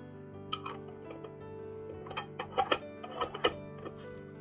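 A screw-top lid being twisted onto a filled glass jar: a quick run of sharp clicks and scrapes, loudest in the second half, over soft background music.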